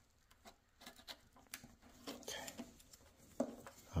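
Faint scattered clicks and rustles of gloved hands unclipping hoses and fittings at a motorcycle's fuel-pump module on top of the tank.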